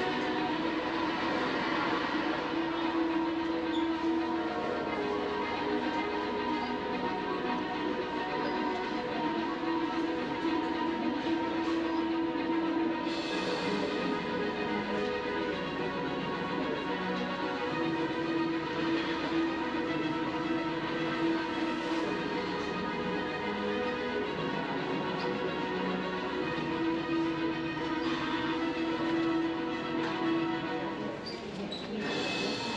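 Music with long held notes that break off and return over a steady bed of sound.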